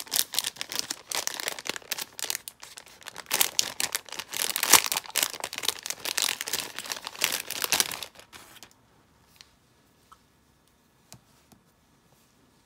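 Thin clear plastic packaging bag crinkling and rustling as it is opened and two chalk markers are pulled out of it, loudest around the middle, stopping about eight seconds in. A couple of faint clicks follow as the markers are handled.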